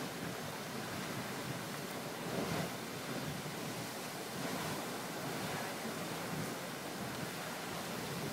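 Grand Geyser erupting: a steady rushing, splashing noise of its water jet and falling spray, swelling briefly about two and a half seconds in.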